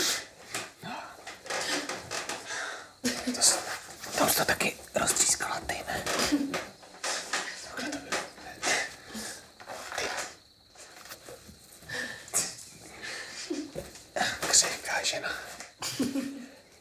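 Speech: a conversation, with short pauses between lines.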